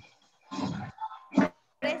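Speech over a video call: a short, rough voice sound from a participant's microphone, then a voice answering 'Present' near the end.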